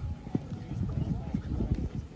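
A run of irregular low thumps, with faint shouting voices behind them.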